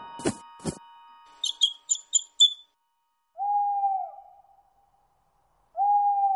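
Cartoon sound effects: two soft thumps, then a quick run of five high bird chirps, then two single owl hoots, each a steady 'hoo' that dips at its end, one just past the middle and one at the very end.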